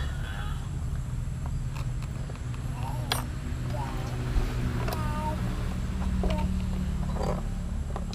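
A few sharp metal clicks as motorcycle seat-lock parts are handled and fitted, the loudest about three seconds in, over a steady low rumble, with faint voices in the background.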